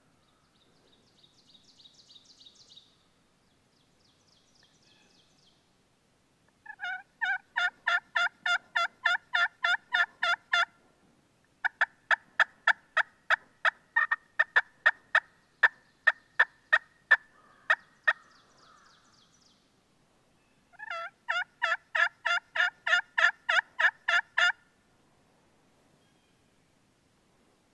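Three series of turkey hen yelps blown on a diaphragm mouth call, each run several seconds long at about three to four notes a second, the middle run the longest.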